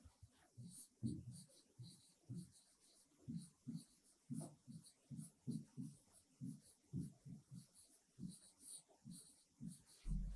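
Faint, irregular taps and scratches of a stylus on the glass of an interactive display screen as words are handwritten, a few strokes a second.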